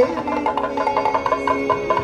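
Kathakali accompaniment music: a steady drone holds under a fast run of drum strokes, about seven a second. A sung phrase ends just as it begins.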